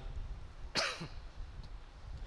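A single short cough about three-quarters of a second in, with low steady room hum underneath.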